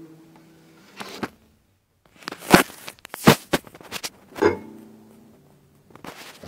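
The last acoustic guitar chord dies away. Then come a couple of clicks and a run of sharp knocks and rustles of handling, as the recording device is picked up and moved. After the last knock the guitar strings briefly ring.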